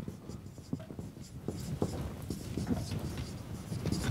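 Dry-erase marker writing on a whiteboard: a quick run of short strokes as two words are written out.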